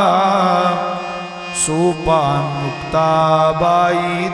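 Kirtan singing: a voice chants a devotional melody with wavering, gliding pitch, over a steady held instrumental accompaniment. There is a brief bright high burst at about a second and a half in.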